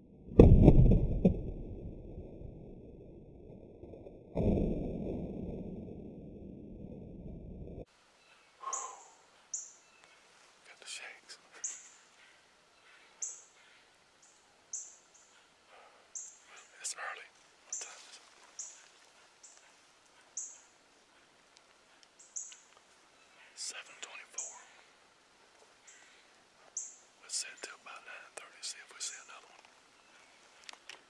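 Two loud, deep knocks, one just after the start and one about four seconds later, each leaving a rumble that fades over a few seconds, then a sudden cut. After it a man whispers in short hissy bursts, with faint birds chirping.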